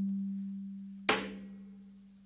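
Slow beating of a Nepali shaman's dhyangro frame drum: the low ringing of one stroke fades away, then a softer stroke lands about a second in and dies out.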